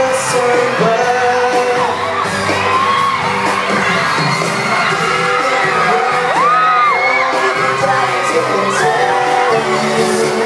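Boy band singing a pop song live over a backing band, in a large hall. High screams from the crowd rise and fall over the music.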